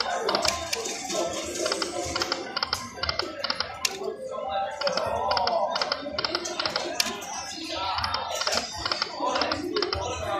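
Poker machine spinning its reels over several unwinning spins: rapid ticking clicks and short electronic tones from the game, about three to four clicks a second, over background voices.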